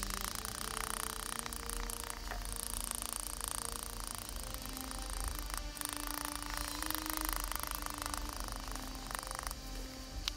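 Fine model-railroad ballast shaken from a plastic shaker-top jar onto a glue-wetted diorama base: a soft gritty rattle in a few spells, over quiet background music.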